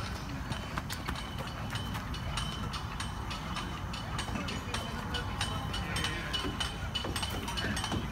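Light, irregular clicks and taps over a low rumble of wind on the microphone, with a faint steady high tone coming in about a second and a half in.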